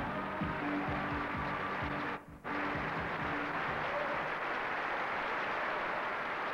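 A pop song's backing band with drums plays out its last bars, then breaks off about two seconds in after a short dropout. A steady, even wash of studio-audience applause follows.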